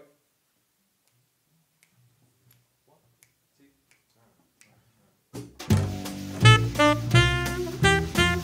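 A few faint clicks over near silence, then about five seconds in a jazz group of tenor saxophone, upright bass and drums starts playing a swing tune, with saxophone notes over a low bass line.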